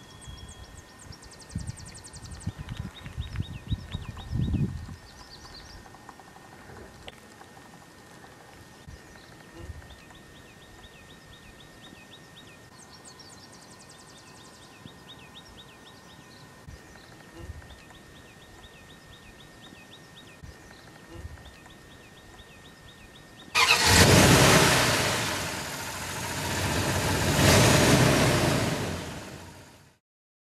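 Small birds chirping in quick repeated series over a faint steady tone. About three-quarters of the way through, a loud engine-like rushing noise cuts in suddenly, swells twice and fades out.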